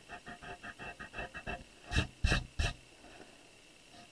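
Pencil sketching on watercolor paper: a quick run of about a dozen short strokes, about six a second, then three louder, sharper strokes about two seconds in.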